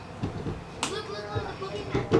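Low, indistinct speech from people in the room, with one brief sharp sound a little under a second in.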